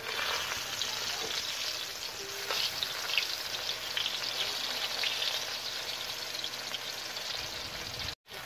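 Split dried fish (daing) frying in hot oil in a pan, with a steady sizzle and scattered small crackles.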